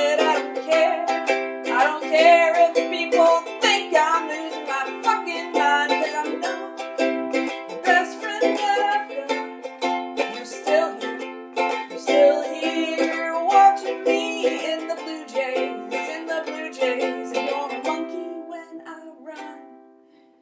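Ukulele strummed in a steady rhythm, with a voice singing along over it. The playing dies away near the end.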